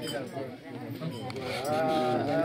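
An unaccompanied voice, broken and talk-like at first, then rising into a long held note with a quavering pitch about one and a half seconds in, in the style of a thado bhaka folk song.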